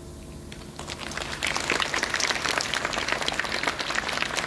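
Applause by a group of people clapping, starting about a second in and quickly growing louder into steady clapping.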